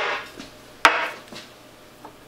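Small glass dropper bottles and glassware being handled and set down on a wooden worktable: two sharp knocks, one at the start and one a little under a second in, each fading briefly, with lighter clinks between.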